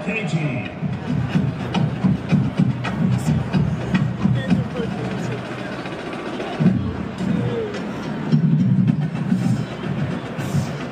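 Music with a quick, driving percussive beat, played over the stadium PA, with voices mixed in.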